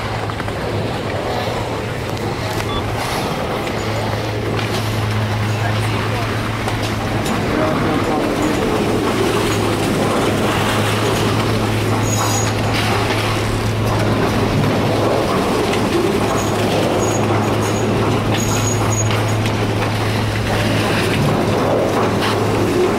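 Steady low hum of a detachable high-speed quad chairlift's terminal machinery at the loading station, under a constant wash of noise as the chairs run through. Indistinct voices of people in the lift line sound beneath it.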